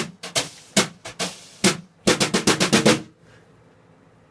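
Wire drum brushes striking a drum: a few separate hits, then a quick even run of about nine strokes in a second, stopping about three seconds in.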